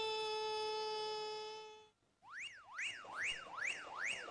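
A steady, buzzy electronic-sounding held tone that fades out about halfway through, then after a short gap a siren-like warble that sweeps up and down in pitch about twice a second.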